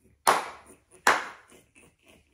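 Two loud hand claps, the first about a quarter second in and the second under a second later.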